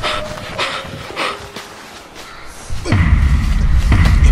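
Horror-trailer sound design: sharp thuds about twice a second over a faint held tone, then a loud, deep rumble swells in near the end.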